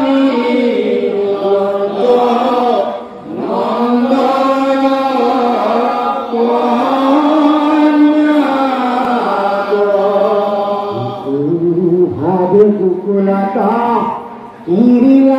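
Male voices chanting an Assamese naam-kirtan devotional hymn in long drawn-out melodic phrases, with short breaks for breath about three seconds in and near the end.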